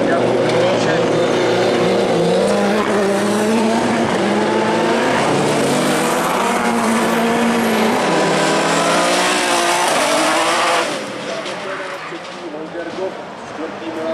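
Autocross buggy engine revving hard, its pitch repeatedly climbing and dropping back with throttle and gear changes through the dirt corners. The sound falls away and gets quieter about eleven seconds in.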